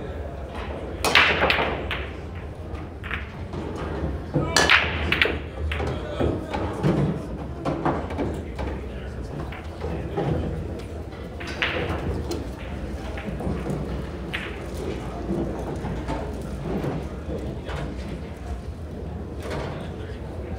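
A pool break: the cue ball cracks into the 9-ball rack about a second in and the balls clatter off each other and the rails. A second loud knock comes about four and a half seconds in, and scattered ball clicks follow over the murmur of a busy hall.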